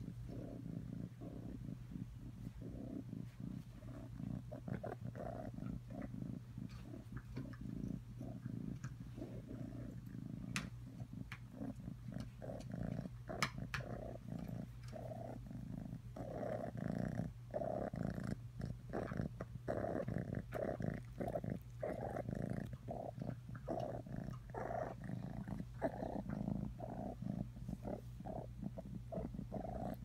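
Orange tabby kitten purring steadily while being stroked, the purr pulsing in and out and growing louder about halfway through.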